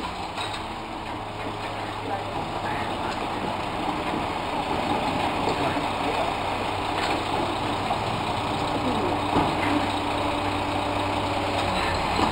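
Garbage truck's diesel engine running at idle: a steady low hum with fainter steady tones above it.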